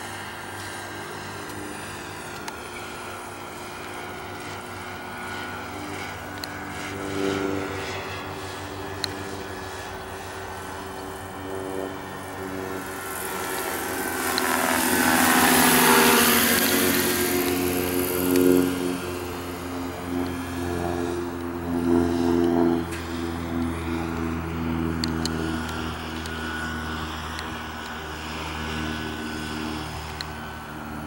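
Radio-controlled scale NH90 helicopter flying, its rotor and drive running steadily. About halfway through it passes close overhead: the sound swells to its loudest and then drops in pitch as it moves away.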